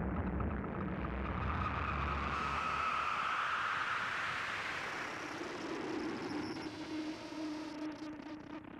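Closing ambient noise soundscape of a death metal album: a rushing, noisy drone without a beat, with a steady low tone, slowly fading out.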